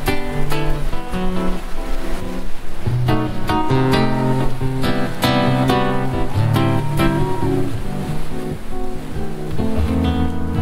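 Solo classical guitar playing a piece of quickly plucked notes over sustained low bass notes.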